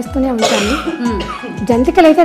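Women's voices over steady background music, with a short harsh burst of noise, like a cough, about half a second in.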